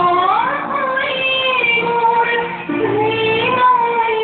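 Singing in a high voice, holding long notes that slide smoothly between pitches.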